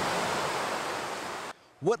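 Pond fountain's water jet splashing down onto the pond surface as a steady rushing hiss, cutting off suddenly about one and a half seconds in.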